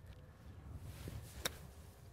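A single sharp click of a golf iron striking the ball on a short chip shot, about one and a half seconds in, over a faint low rumble of wind.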